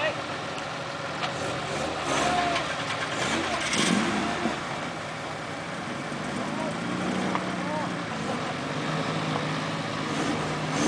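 Nissan SR20VE 2.0-litre four-cylinder engine of an off-road buggy running at low, fairly steady revs as the buggy crawls over rough, muddy ground.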